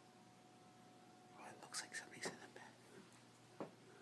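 A person whispering briefly about halfway through, in otherwise near silence, followed by a soft click near the end.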